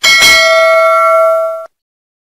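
Notification-bell sound effect: one bright bell chime, struck once, ringing with several steady tones for about a second and a half, then cut off suddenly.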